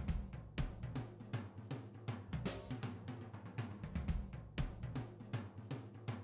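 Background music: a steady drum-kit beat over a bass line.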